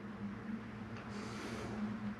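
Quiet room tone: a steady low hum, with a faint soft rustle lasting under a second about a second in.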